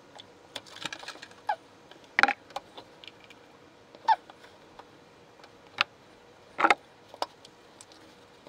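Alcohol mouthwash being swished around a closed mouth: a string of scattered short wet squelches, clicks and small squeaky mouth noises, a second or two apart, with nothing continuous between them.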